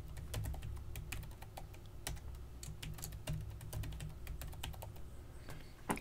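Typing on a computer keyboard: a run of quiet, irregular key clicks as a password is entered.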